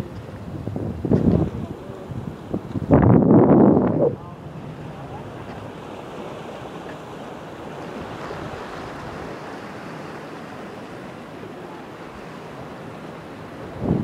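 Sea surf washing against a harbour jetty, with wind buffeting the microphone. A loud rush about three seconds in lasts roughly a second, then a steady wash of sea and wind.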